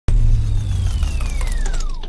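Intro logo sound effect: a loud rushing whoosh over a deep rumble, with a whistle-like tone sliding steadily down in pitch.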